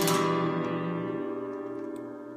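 The closing chord of the song, strummed on a Taylor acoustic guitar, ringing out and slowly fading.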